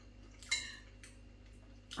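A single short clink of a metal spoon against the food container about half a second in, over quiet room tone.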